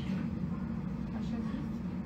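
A steady low hum of background noise, with faint snatches of a man's voice.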